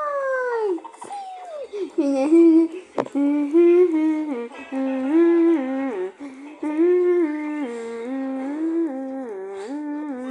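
A person humming a wordless tune. The voice steps between a few held notes in a repeating melody, after a falling note at the start.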